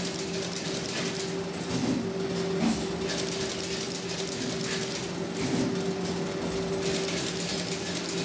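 An automatic notebook binding machine running steadily: a constant hum with a continual clatter from its gears and sheet-feed mechanism.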